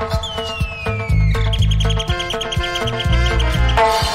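Late-1970s roots reggae dub instrumental with a deep bass line and held chords. About a quarter-second in, a high bird-like whistle slides downward, followed by a rapid high chirping trill of about ten pulses a second that stops shortly before the end.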